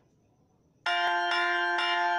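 Near silence, then a little under a second in, bright bell-like chime tones start suddenly and ring on, struck again several times in quick succession.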